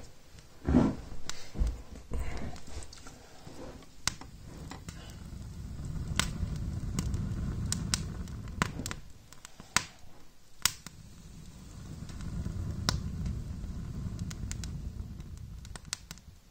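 Small wood fire of split kindling catching on a bed of embers, with sharp crackles and pops scattered through. Two stretches of low rushing rumble, a few seconds each, run under the pops in the middle and later part.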